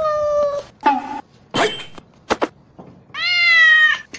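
Cat meowing: a long drawn-out meow at the start, shorter sharp meows in the middle, and another long meow near the end that rises, then holds its pitch.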